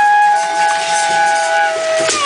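Several wind-instrument tones held together as a steady drone over a breathy hiss. The lower tone breaks off and comes back in about a third of a second in.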